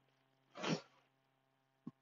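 A single short, breathy vocal burst from a man, about half a second in, much quieter than his speech, then a faint click near the end.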